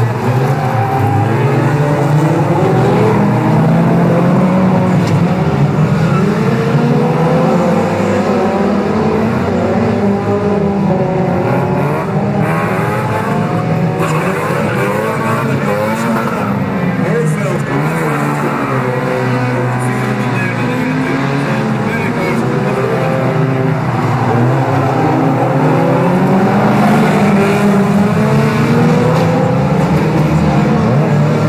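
Engines of a pack of 1600cc autocross cars racing, several engines revving up and down at once and overlapping as the cars go through the corner and pass.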